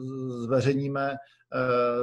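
A speaker's voice drawing out a long hesitation sound at a nearly steady pitch for over a second, then another held sound near the end as speech resumes.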